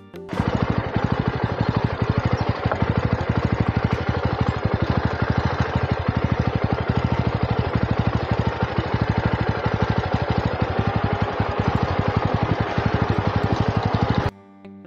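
Motorcycle engine running at low revs, an even, rapid thudding of about a dozen pulses a second; it cuts in abruptly just after the start.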